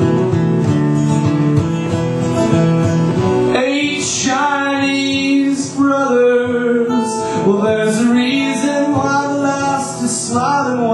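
Acoustic guitar strumming in a live solo song, joined about four seconds in by a man singing.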